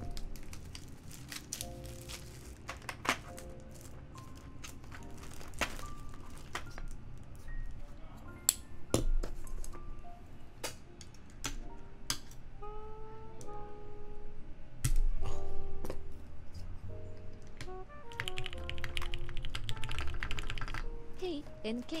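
Plastic clicks and knocks of keycaps being handled and pressed onto the switches of a brass-plate TGR Alice mechanical keyboard, then a few seconds of rapid typing on its linear Gateron Ink Black switches near the end. Background music plays throughout.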